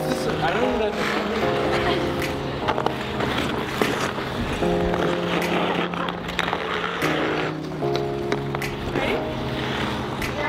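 Background music: a song with sustained chords that change every second or two and a singing voice over them.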